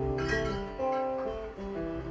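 Live band music: a guitar playing ringing, sustained chords, with a fresh strum a quarter-second in.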